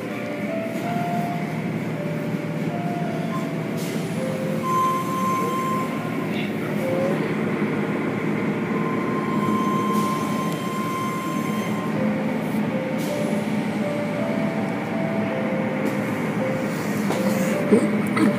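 Automatic car wash tunnel running: a steady, loud wash of water spray and motor-driven cloth curtains and brushes slapping over a car.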